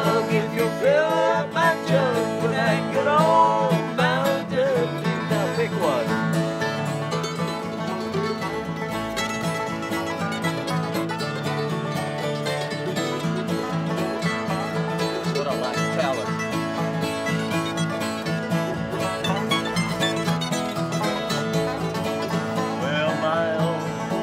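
Bluegrass band playing an instrumental break on acoustic guitar, five-string banjo and mandolin, with no singing.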